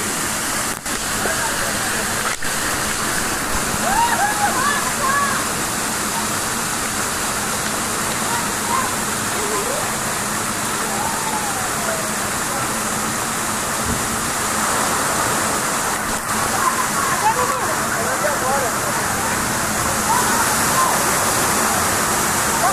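Water running steadily down water-park slides and splashing into the pool below, with faint distant voices.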